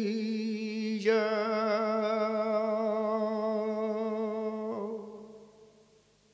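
A male flamenco cantaor singing a martinete unaccompanied, drawing out long melismatic notes with a wavering vibrato. A short break comes about a second in, then one long held note, and near the end a short lower note that fades out.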